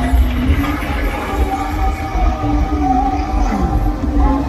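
Music with a slow, held melody line that wavers and bends down in pitch near the end, over a steady low rumble.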